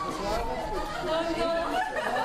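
Several people talking at once: overlapping chatter.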